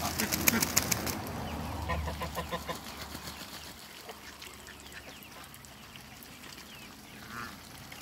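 A flock of domestic ducks and geese bathing in a shallow puddle. Water splashes and wings flap sharply in the first second, a quick run of quacking calls comes about two seconds in, and a short call is heard near the end.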